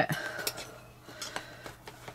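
Faint handling sounds of a ceramic bowl being pressed and shifted on a soft resin piece: a light rubbing with a few small taps.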